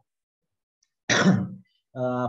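A man clears his throat once, a short burst about a second in.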